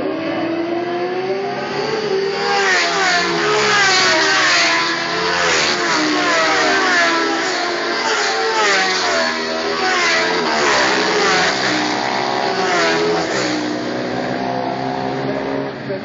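A group of racing motorcycles accelerating hard down the straight and past. Their engines climb in pitch and drop back again and again as they change up through the gears, several bikes overlapping. The sound builds from about two seconds in, is loudest a few seconds later, and fades near the end.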